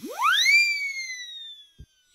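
Dubbed-in sound effect: a whistle-like electronic tone that sweeps sharply up in pitch over about half a second, then slowly slides back down, with a short low thud near the end.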